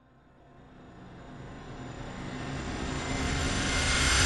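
A low, dense soundtrack swell fading in from silence and growing steadily louder.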